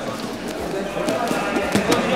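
Live sound of a grappling class: scuffling and several dull thumps of bodies and feet on foam mats, with other people talking in the background.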